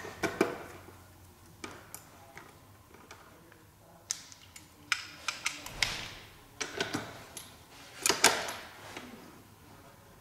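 Socket wrench on an extension loosening the bolts of a motorcycle's rear brake caliper: scattered sharp metal clicks and taps, coming in quick clusters around the middle and again near the end.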